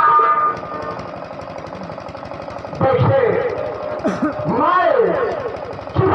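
Stage music with drums cuts off just after the start. From about three seconds in, a man's loud, drawn-out voice comes over a PA microphone, its pitch sweeping up and down in long arcs like a declaimed or sung theatre line.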